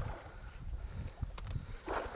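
Low, uneven wind rumble on the microphone, with a couple of faint sharp clicks about a second and a half in.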